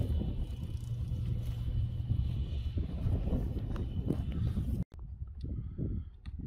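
Low, buffeting rumble of wind on the microphone in a pasture, cutting off abruptly about five seconds in; a quieter stretch with a few faint clicks follows.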